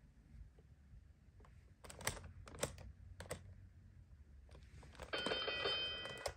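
Plastic number dials of a LeapFrog Twist & Shout Division toy clicking as they are twisted, a few sharp clicks about two to three seconds in. Near the end the toy sounds a steady electronic tone for about a second.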